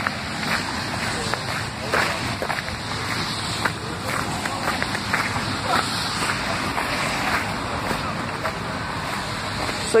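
Footsteps crunching and squelching through a lawn covered in wet hailstones, with scattered irregular crackles over a steady rushing noise.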